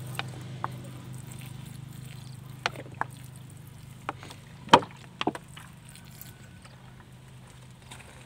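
Milky liquid poured from a plastic bottle onto potted caladium plants, falling in drips and small splashes on the leaves and potting soil. The splashes come irregularly, the loudest about halfway through, over a steady low hum.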